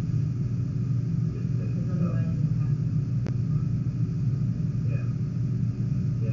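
A steady low machine hum, with faint indistinct voices now and then and a single sharp click about three seconds in.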